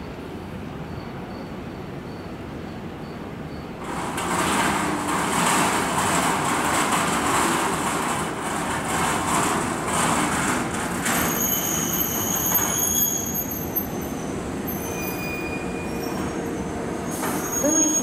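Kintetsu 2430-series electric train pulling into the platform. Its wheels rumble on the rails from about four seconds in. From about eleven seconds thin, high squeals come from the brakes and wheels as it slows to a stop.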